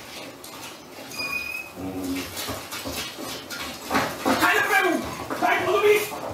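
A dog whining: a short high whine about a second in, then several louder wavering whines that rise and fall in pitch near the end.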